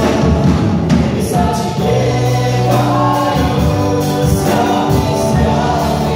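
Live worship band: several men and women singing together over drums and guitars.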